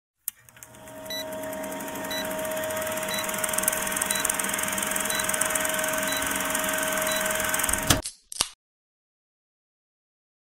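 Vintage film-projector countdown sound effect: a projector running with a steady whir and rapid clatter, and a short high beep about once a second. It ends with a couple of clicks and cuts off abruptly after about eight seconds.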